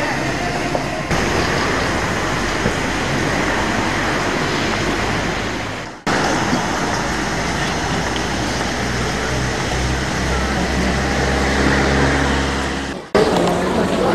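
Town-street ambience: traffic noise mixed with the voices of passers-by. A vehicle engine's low drone builds from about ten seconds in. The sound cuts out abruptly twice, about six seconds in and just before the end.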